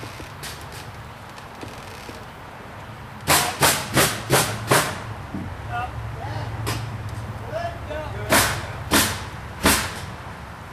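Hammer striking wood framing: a run of five blows about three a second, a single blow a little later, then three more near the end.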